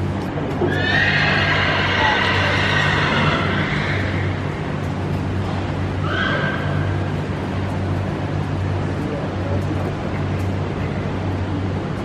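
A horse whinnying: one long call starting about a second in and lasting around three seconds, then a shorter one about six seconds in. A steady low hum runs underneath.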